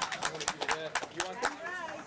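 Scattered hand claps from a crowd as applause dies away, mixed with crowd voices.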